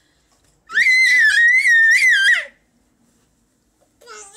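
A toddler's loud, high-pitched scream of about two seconds, starting just under a second in, with a wavering pitch.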